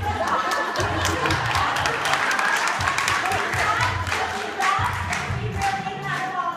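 A roomful of people shouting, laughing and cheering along to a call-and-response nursery rap, over a recorded backing track with a steady beat, with scattered clapping.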